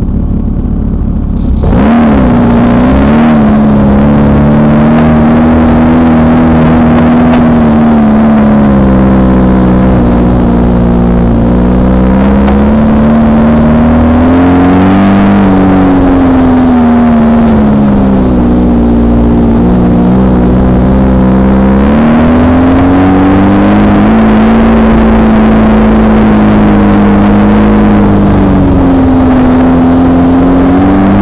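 VW-powered woods buggy's engine, heard from on board, running loud as the buggy drives a rough dirt trail, its pitch rising and falling every few seconds as the throttle is worked on and off. It jumps louder about two seconds in.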